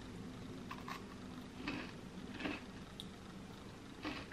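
Faint chewing of a crunchy shortbread biscuit: a few soft crunches roughly a second apart over a low steady room hum.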